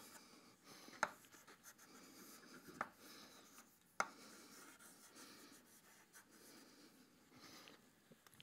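Chalk writing on a blackboard: faint scratching, with three sharper taps of the chalk about one, three and four seconds in.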